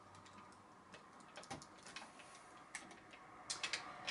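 Faint clicks and light knocks of the Soul of Chogokin Danguard Ace toy robot's parts being handled as its wing piece is pressed into its back: a click in the middle, another a little later, and a quick cluster of clicks near the end.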